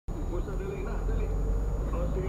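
Steady low rumble of a vehicle running on the road, with a faint voice in the background.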